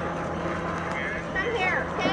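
Indistinct voices of people talking, over a steady low hum and outdoor background noise.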